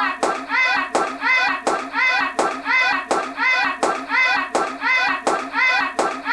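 A group of people clapping in time at a steady, fast beat, with the same short chanted call on every beat.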